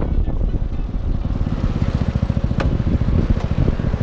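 Scooter engine running steadily while riding, heard from the rider's seat as a low, even pulsing, with wind rumbling on the microphone.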